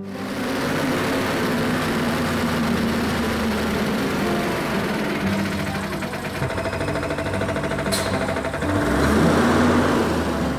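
Street traffic noise with a city bus's diesel engine running, a brief hiss about eight seconds in and a louder rumble near the end as the bus comes close.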